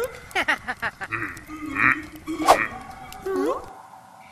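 Cartoon characters making wordless voice sounds: short gibberish exclamations and grunts with rising and falling pitch. Short clicks and cartoon sound effects are mixed in, the sharpest about two and a half seconds in.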